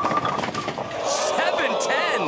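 A ten-pin bowling ball crashes into the rack, with the pins clattering and scattering across the pin deck and leaving a 7-10 split. Voices rise in the second half.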